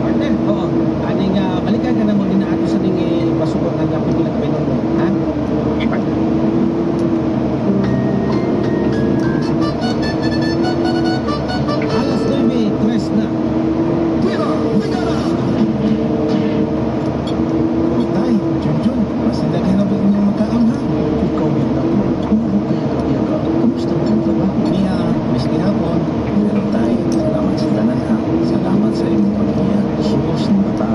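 Excavator's diesel engine running steadily under hydraulic load, its pitch wavering up and down as the bucket digs, with a brief higher whine a third of the way in.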